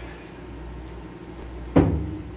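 Steady low electrical hum from the band's live amplifiers between songs, then a single sharp thump near the end.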